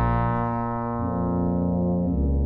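Brass quintet of two trumpets, French horn, trombone and tuba playing sustained chords, with the lower parts moving to new notes about a second in.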